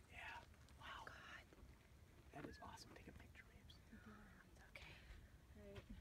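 Near silence with faint whispered voices, a few short hushed phrases.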